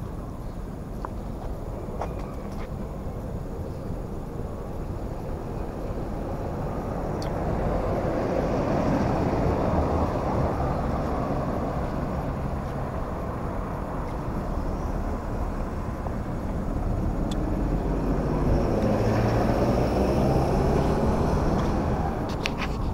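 Road traffic: a steady wash of passing cars, swelling as vehicles go by about eight seconds in and again near the end.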